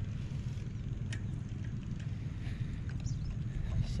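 Small engine of a two-wheel walking tractor running at a steady idle, a low even rumble, with a few faint clicks over it.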